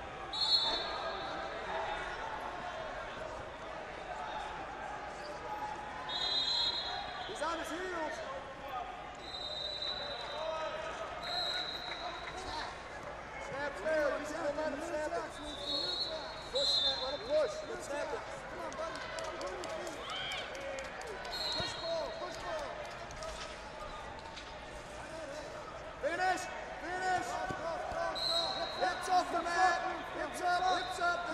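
Wrestling gym ambience: a steady hubbub of voices and shouts from around the hall, cut by about eight short referee whistle blasts from the surrounding mats, with occasional thuds and slaps of bodies on the mats.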